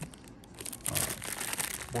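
A clear plastic bag crinkling as it is handled around a coiled cable. The crackling is sparse at first and grows busier from about halfway through.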